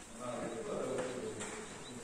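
A man speaking from the pulpit over a public-address system in a large hall.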